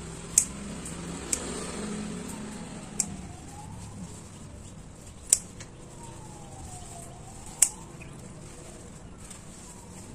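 Scissors snipping lemon basil stems: five sharp clicks spaced unevenly over several seconds. Behind them are a steady hum of road traffic and a faint, slowly wailing siren.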